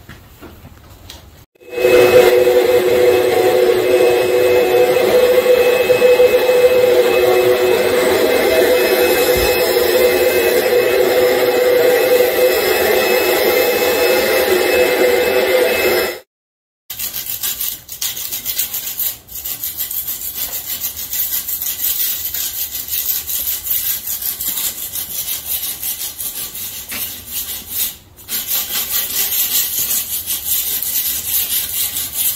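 A wet/dry shop vacuum running with a steady motor whine for about fourteen seconds, starting about two seconds in and cutting off suddenly. After a brief gap, a rough, fluttering scraping on the concrete floor runs on to the end.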